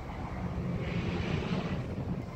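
A steady low rumble with a passing vehicle's rush that swells to a peak about a second and a half in, then fades.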